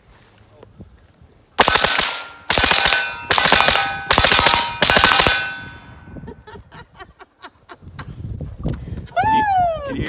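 A suppressed 5.56 AR-15 pistol with a 7-inch barrel fired rapidly, shot after shot in about five quick strings over some four seconds, with steel targets ringing after the hits. A few faint ticks follow, then a short voice near the end.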